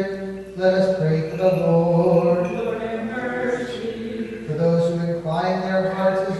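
Byzantine chant sung by a cantor: long, melismatic phrases of held notes that slide between pitches, over a steady low note, with a brief breath about half a second in and again near the end.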